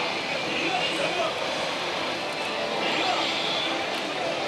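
Steady din of a busy pachislot parlour: many slot machines' electronic sounds and distant voices merging into one constant noise.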